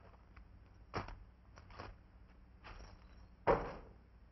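A few scattered knocks and scuffs with quiet between them, and one louder thump about three and a half seconds in.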